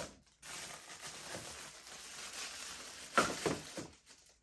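Plastic packaging rustling as it is handled, with a louder rustle about three seconds in.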